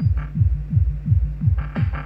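Live techno from a hardware drum machine and synth rig: a steady kick drum about four beats a second with the hi-hats and higher parts filtered away, the upper sounds coming back near the end.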